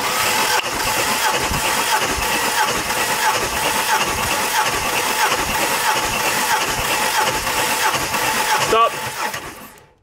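Ford AU Falcon's Intech inline-six being cranked on the starter motor with all spark plugs removed and the fuel disabled, during a compression test: an even, fast cranking whirr that stops suddenly near the end.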